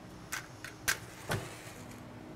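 A safety match struck against the side of a matchbox: four short, sharp scratches over about a second.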